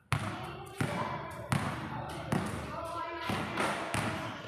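Basketball being dribbled on a concrete court, each bounce a sharp slap, repeating about every three quarters of a second.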